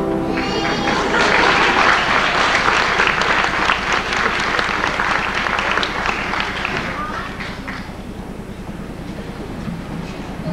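Audience applauding, starting about a second in and fading away around seven seconds in, just after the last notes of a children's song.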